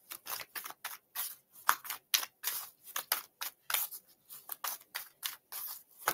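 A tarot deck being shuffled by hand: a quick, uneven run of short papery swishes and snaps, about three to four a second.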